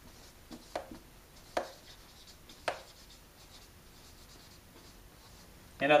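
Marker writing on a whiteboard: quiet scratchy strokes with a few sharper taps, the clearest about one, one and a half and two and a half seconds in.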